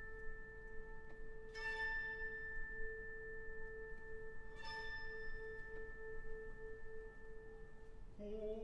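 Soft orchestral passage: a held, gently pulsing note in the orchestra, with two struck notes on a keyboard mallet percussion instrument about a second and a half in and near five seconds, each ringing on for a few seconds.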